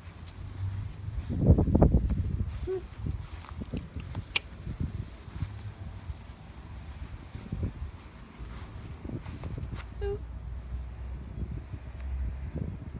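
Footsteps on a concrete sidewalk over a steady low rumble on a phone microphone, with a louder burst of rumble about two seconds in.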